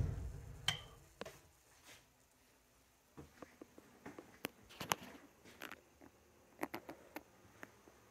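Onan Quiet Diesel 7500 generator shut off, its low hum dying away within about the first second. Faint scattered clicks and taps follow.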